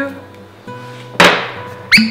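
Two sharp knocks of kitchenware on the counter, the first a little past the middle with a brief ring, the second just before the end, over soft background music.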